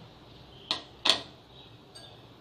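Two brief taps, under half a second apart, as a hand reaches into a glass mixing bowl of seedai dough.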